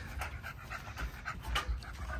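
Young American pocket bully dog panting quickly and steadily, winded from its warm-up run.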